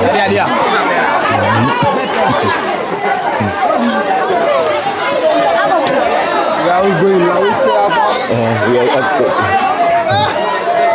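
A crowd of people talking and calling out over one another, with no single voice standing out.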